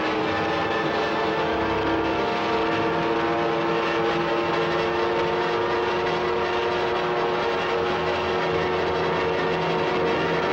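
A steady engine drone that rises slightly in pitch, with no breaks.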